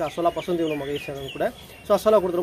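Chickens clucking, a quick run of short high calls about half a second to a second in, heard under a man talking.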